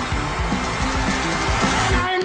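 Loud, dense film-soundtrack music with sustained low bass notes that step from one pitch to another.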